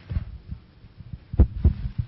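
A few low thumps of a handheld microphone being handled and passed to a questioner, the loudest two close together about a second and a half in.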